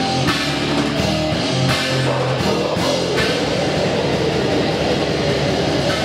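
Death metal band playing live, loud: distorted electric guitars, bass guitar and drum kit. The riff changes to a denser, noisier texture about three seconds in.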